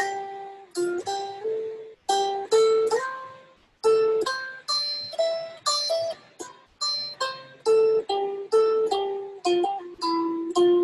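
Electric guitar picked one note at a time in a melodic riff, about two notes a second, each note ringing briefly before the next.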